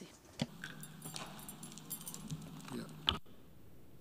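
Quiet hall ambience through an open podium microphone: a steady low hum with a scatter of small high ticks and clicks, then a sharper click about three seconds in, just before the sound cuts off suddenly.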